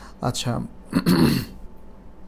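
A man clearing his throat: short vocal sounds, then a louder, rough clearing about a second in.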